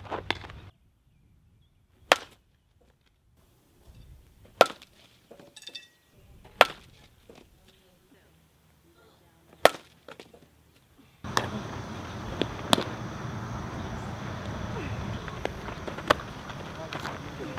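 A softball bat hitting a softball about five times, each a single sharp crack a couple of seconds apart. From about eleven seconds in, a steady outdoor background noise takes over, with a couple of lighter knocks.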